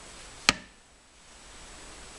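A single sharp click about half a second in, over faint room hiss.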